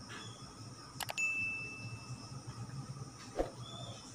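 Sound effect of the on-screen subscribe animation: two quick mouse clicks about a second in, then a short, clear bell-like ding. A single click follows near the end.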